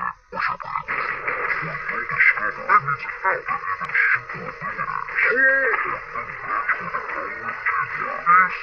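Animated trailer soundtrack played back in slow motion through a TV speaker: drawn-out, unintelligible character voices with music underneath.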